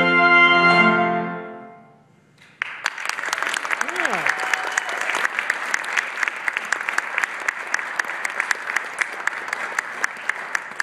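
The final chord of clarinet, trumpet and piano is held and dies away over about two seconds. After a brief silence an audience starts applauding and keeps clapping steadily.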